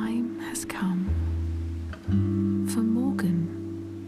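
Spoken narration over gentle lullaby music with plucked strings and sustained low notes.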